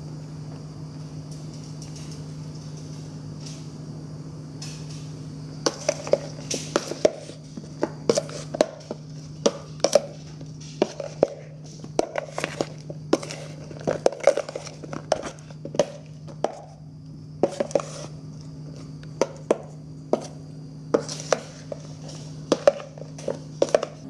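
A metal spoon stirring sliced strawberries in a plastic bowl, with irregular clicks and knocks of the spoon against the bowl starting about five seconds in. A steady low hum runs underneath.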